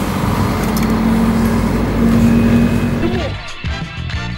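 Snowmobile engine running loudly with a steady drone. Music comes in near the end.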